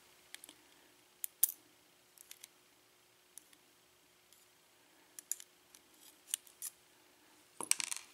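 Light metallic ticks and clicks from steel tweezers working in the plug of a pin-tumbler lock cylinder, picking out its pin stacks. The taps come scattered and irregular, with a louder burst of handling noise near the end.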